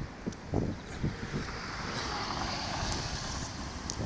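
Wind rumbling on the phone microphone, with a faint steady hiss that comes up about a second and a half in.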